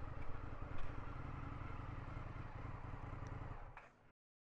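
Indian FTR 1200's V-twin engine running steadily, with no revving, fading out near the end.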